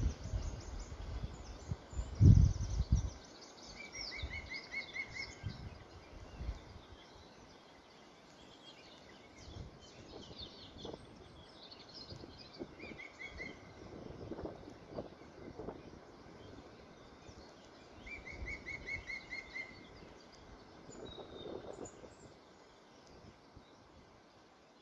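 Songbirds singing outdoors: a short, rapid trill repeated three times among scattered higher chirps, over faint outdoor background. A brief low thump about two seconds in is the loudest sound.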